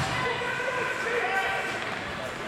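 Several voices shouting and calling over each other across an ice hockey rink during play, with a sharp knock right at the start.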